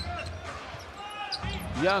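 A basketball being dribbled on a hardwood arena court: repeated low thuds over a steady arena hubbub.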